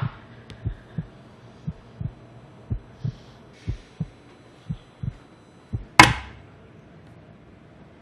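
Heartbeat sound effect: low, muffled double thumps about once a second. About six seconds in, one sharp, loud crack cuts across it, far louder than the beats.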